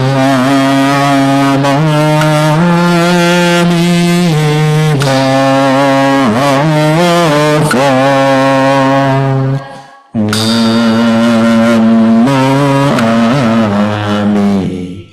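Buddhist nianfo chanting, the Buddha's name recited in a slow, drawn-out melody: long held notes that step and bend in pitch, with a brief pause for breath about ten seconds in.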